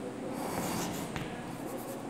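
Chalk writing on a chalkboard: faint scratching strokes, with a light tap about a second in.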